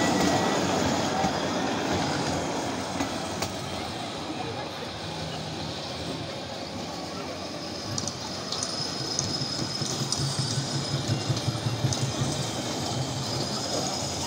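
Small amusement-park ride train, a tractor-style locomotive pulling barrel cars, running along its narrow track with a low motor hum and wheel clicks. The sound grows louder with sharper clicks about eight seconds in as the train passes close, then eases off.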